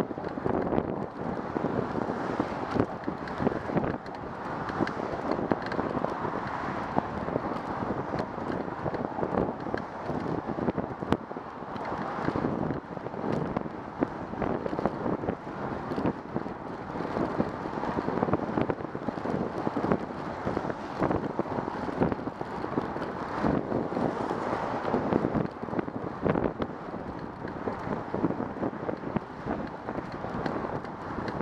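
Wind rushing and buffeting on the microphone of a camera on a moving bicycle, a dense irregular rumble.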